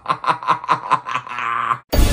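A man laughing in a quick run of short bursts, about five a second. Loud music cuts in abruptly near the end.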